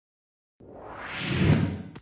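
A whoosh sound effect: silent for about half a second, then a swelling rush that builds to a peak about a second and a half in and quickly dies away.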